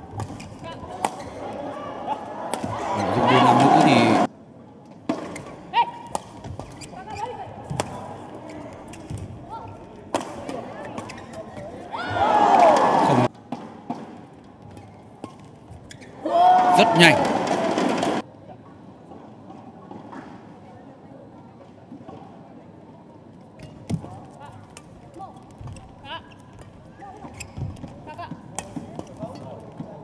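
Badminton rally: repeated sharp racket strikes on the shuttlecock and shoe squeaks on the court floor, with three louder bursts of voices about three, twelve and seventeen seconds in.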